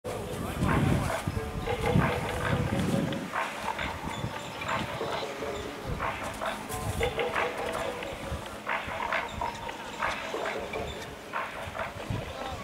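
People's voices calling out and shouting, too loose to make out as words, with bits of louder low rumble in the first few seconds.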